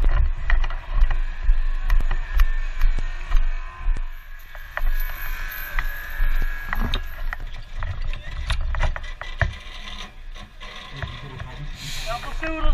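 Scattered metallic clinks, knocks and rubbing of hydraulic rescue gear and a chain set being gathered and handled, over an uneven low rumble of movement close to the microphone.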